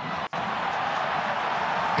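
Football stadium crowd noise from a match broadcast: a steady roar of many voices in the stands, broken by a brief dropout about a third of a second in.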